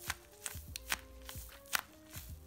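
A tape-covered paper squishy being squeezed by hand, the taped paper crinkling in a few short crackles, over soft background music.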